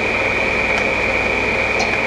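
Clausing/Covel 512H cylindrical grinder running with its hydraulic table pump on: a steady mechanical hiss with a constant high whine and a low hum underneath.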